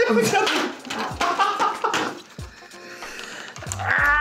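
Men's laughter and voice sounds over background music, with scattered clicks and knocks at the table.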